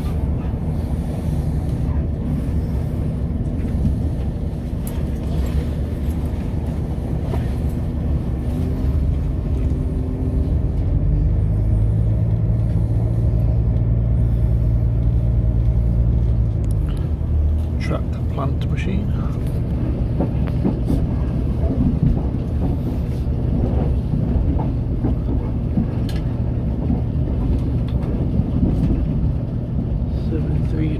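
Inside a diesel multiple unit train on the move: the underfloor engine drones steadily under the rumble of wheels on rails, with occasional clicks from the track. The engine note rises about eight seconds in, is loudest from about eleven to seventeen seconds, then eases back.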